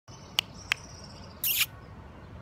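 Small creatures calling: two sharp, high chirps, a faint steady high whine, then a short high rasping call that falls in pitch, over quiet background.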